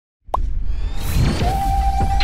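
Electronic logo-intro music with sound effects: a sharp pop about a third of a second in, then a rising whoosh over a deep bass, and a steady held tone coming in about one and a half seconds in.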